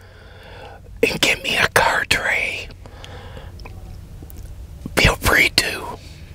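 A man whispering close to a clip-on microphone, in two stretches with a pause between, over a steady low hum.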